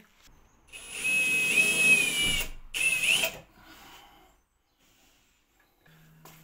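Power tool cutting a hole through a plasterboard ceiling. It runs for about two seconds with a whine that drops in pitch as it bites, stops, then gives one short second burst.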